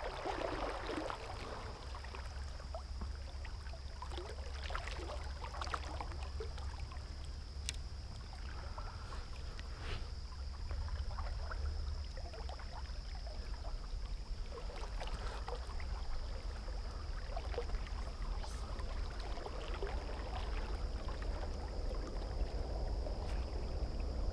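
River water lapping and trickling close to a GoPro's microphone, with small scattered splashes over a steady low rumble. A faint, steady high-pitched whine runs underneath.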